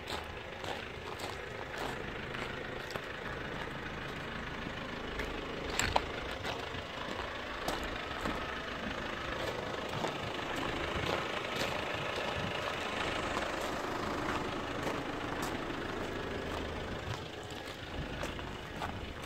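2009 Hyundai Santa Fe CM's 2.2-litre diesel engine idling steadily, with one sharp click about six seconds in.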